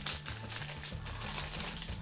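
Crinkling of a clear plastic parts bag and small plastic toy pieces clicking together as they are handled, over faint background music.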